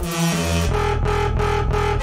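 Electronic, dubstep-style music built from looped, effects-processed beatbox in a loop-station producer performance. A distorted, buzzing bass enters under sustained synth-like tones, with the upper sound pulsing a few times a second.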